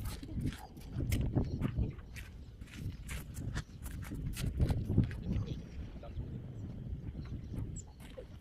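Footsteps crunching on gravel, irregular and uneven, over a patchy low rumble.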